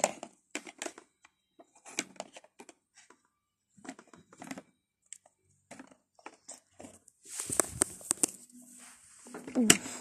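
Small plastic Littlest Pet Shop figurines being handled and set down on a plastic playset: scattered light taps and clicks. About seven seconds in, a couple of seconds of rustling follows.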